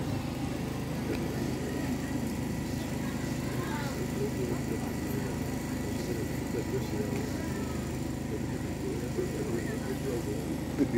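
Indistinct voices chattering over a steady low mechanical hum.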